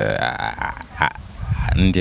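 A person's voice: a drawn-out vocal sound rising in pitch in the first second, a short click about a second in, then speech.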